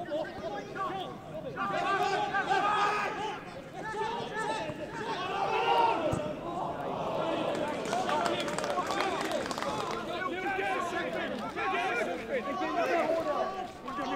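Overlapping shouts and chatter from many voices at a small football ground, spectators and players calling out over one another, with no single voice standing clear.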